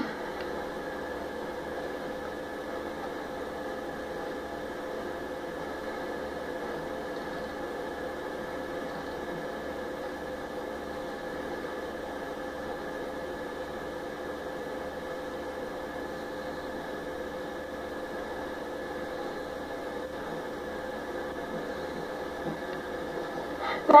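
A steady hum with a few fixed tones over a hiss of room noise, unchanging throughout.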